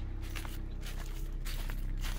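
Footsteps on dry fallen leaves, several uneven steps, over a steady low hum.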